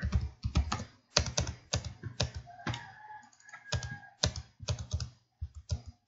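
Computer keyboard being typed on: a quick, uneven run of key clicks as a command is entered.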